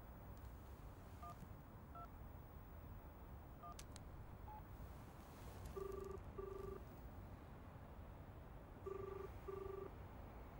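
Mobile phone keypad beeps, four short tones as a number is dialed, then a double-ring ringback tone heard twice, about three seconds apart, as the call rings out.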